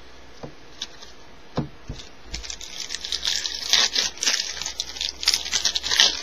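Foil wrapper of a baseball card pack being torn open and crinkled. A few light taps come first, then dense crinkling starts about two seconds in and grows louder toward the end.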